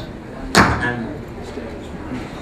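A single sharp thump about half a second in, over low background room noise.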